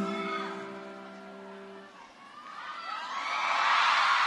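A held final note of a live pop song fades out over about two seconds. Then a large concert crowd cheers and screams, swelling louder near the end.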